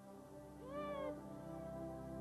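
Slow music of held notes, with a single cat meow about half a second in that rises and then falls.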